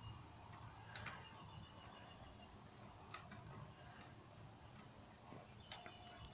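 Near silence: a low room hum with a few faint clicks, one about a second in, another around three seconds, and a couple near the end.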